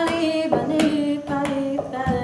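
A woman singing held, gliding notes unaccompanied, over hand claps keeping time at about two claps a second.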